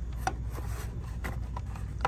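Framed wall signs knocking and rubbing against one another as they are flipped through on a pegboard hook: a few light clacks, over a steady low hum.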